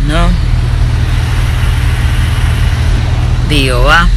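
Car engine idling, a steady low rumble heard from inside the car.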